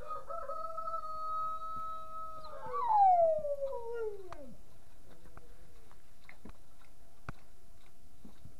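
A long animal call: one held note for about two and a half seconds, then a louder glide that falls steadily in pitch and dies away about four and a half seconds in. A few faint clicks follow.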